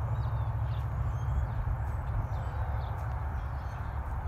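Steady low wind rumble on the microphone outdoors, with scattered faint bird chirps.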